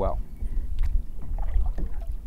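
Kayak paddle stroking through the water, with a few faint splashes and drips, over a steady low rumble of wind on the microphone.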